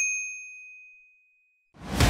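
A single bright electronic 'ding' chime, the notification-bell sound effect of an animated subscribe button, ringing out and fading away over about a second and a half. Near the end, music starts abruptly.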